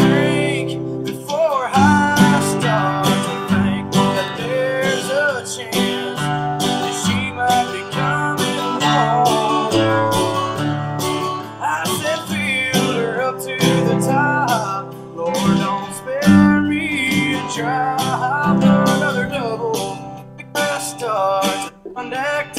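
Epiphone acoustic guitar strummed in steady chords that change every second or two, with a man singing along over it.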